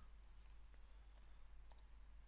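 Near silence: room tone, with a few faint computer mouse clicks, one about a quarter second in and a pair near the end.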